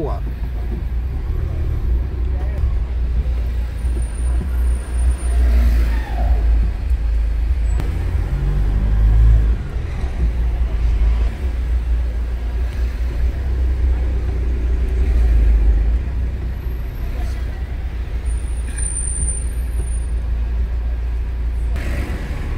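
Steady low rumble of a car's engine and tyres, heard from inside the cabin while driving slowly through city traffic; it swells a little now and then as the car pulls forward.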